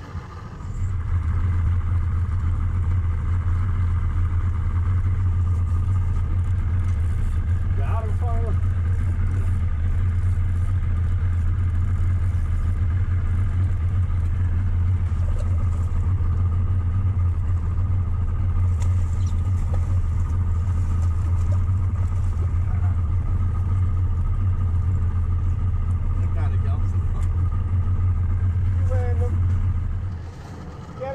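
Boat's outboard motor running at a steady speed: a loud, even low drone that comes up about a second in and holds without change. Faint voices are heard under it a couple of times.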